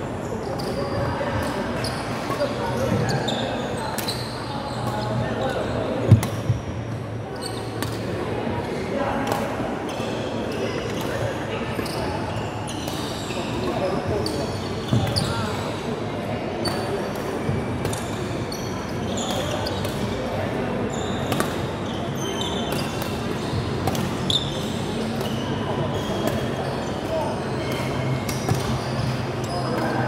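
Badminton rally on a wooden indoor court: repeated sharp racket-on-shuttlecock hits, the loudest about six seconds in, with short squeaks of court shoes on the floor. Voices murmur in the background throughout.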